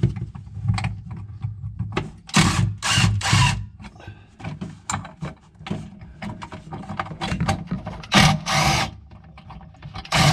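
Cordless drill/driver running in short bursts to back screws out of a refrigerator's evaporator fan bracket: two runs of about a second each, about two and a half and about eight seconds in, with light clicks and rattles of the plastic fan housing and bracket between them.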